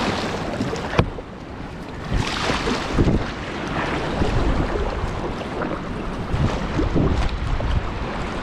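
Kayak paddle strokes splashing in moving river water, with water washing against the kayak's hull and wind buffeting the microphone. A sharp knock about a second in, and several louder splashes follow through the stroke sequence.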